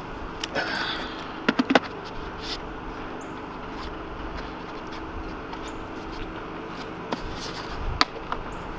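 Handling of a paintball marker and its HK Army Sonic loader: scattered hard plastic clicks and knocks, with three sharp clacks in quick succession about a second and a half in, over a faint steady hum.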